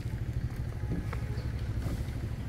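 Low, steady rumble of street background, with a couple of faint clicks.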